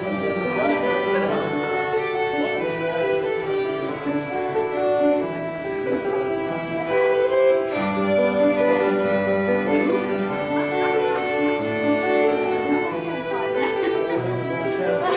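A live band playing a fiddle-led folk dance tune, the fiddle carrying the melody over sustained lower notes.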